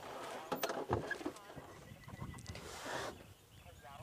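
Faint, brief snatches of a voice over a low rumble, with a few light clicks.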